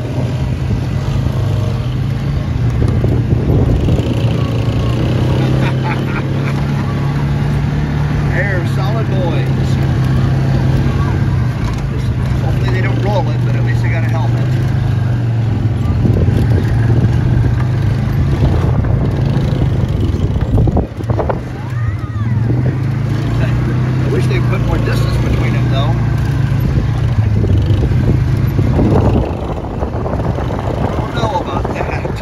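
Four-wheeler (ATV) engines running close by, a steady drone with small changes in throttle, dipping briefly about two-thirds of the way through and falling away near the end.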